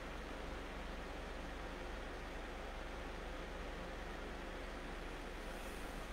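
Steady faint hiss with a constant low hum: room tone and microphone noise, with no other sound standing out.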